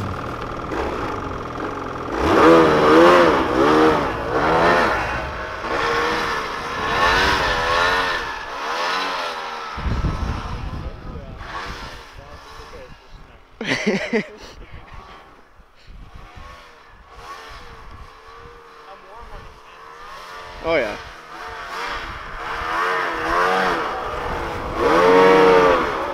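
Snowmobile engine revving as the sled pulls away and is ridden across the snow, its pitch rising and falling over and over. It fades in the middle and grows loud again near the end as the sled passes close.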